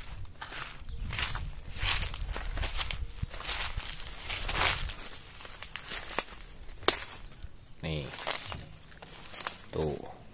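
Footsteps through garden undergrowth, with leaves and stems brushing past as someone pushes through the plants, busiest in the first half. Two sharp clicks about six and seven seconds in.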